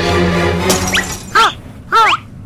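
Cartoon background music breaks off about two-thirds of a second in with a glass-shattering sound effect. It is followed by two short, high-pitched sound effects that bend up and down in pitch.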